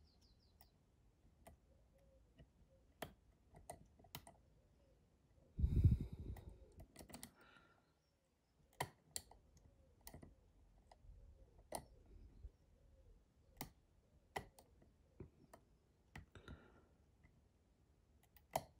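Faint, irregular metallic clicks and ticks of a dimple pick working the pins of a Mul-T-Lock Integrator cylinder under light tension, as the pins are set one by one. A louder brief rustle of handling comes about six seconds in.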